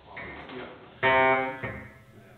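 Six-string fretless electric bass being plucked: soft notes, then one loud note about a second in that rings with many overtones and fades.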